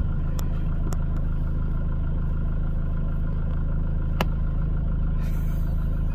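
A motor vehicle's engine idling with a steady low hum. There is a sharp click right at the start and a lighter tick about four seconds in.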